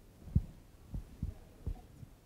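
Microphone handling noise: four soft, dull low thumps, irregularly spaced.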